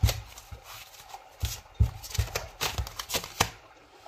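A deck of oracle cards being shuffled by hand: an irregular run of soft slaps and clicks as the cards strike and slide against each other.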